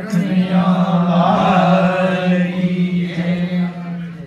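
Male voices holding one long chanted note, steady in pitch for nearly four seconds before trailing off at the very end, the close of a devotional chant.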